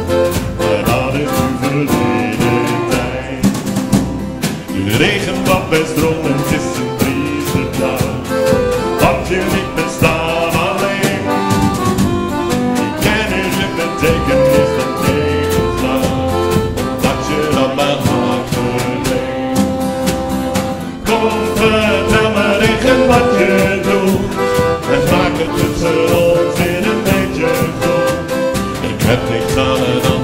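Live acoustic guitar and accordion playing a Dutch sing-along song over a steady percussion beat, with singing in some stretches.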